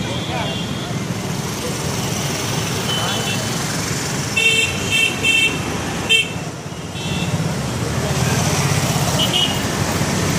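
Road traffic with a steady engine and road rumble. A vehicle horn toots four times in quick succession about halfway through.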